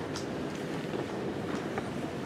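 Steady low room hum between sentences of a talk, with no distinct events.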